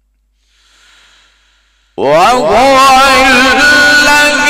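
Near silence with a faint breath-like sound, then about halfway through a man's voice begins loudly in melodic Quran recitation (mujawwad style), gliding up in pitch and then holding a long, sustained note.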